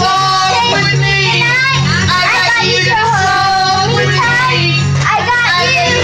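Karaoke: a woman singing into a handheld microphone over a loud music backing track.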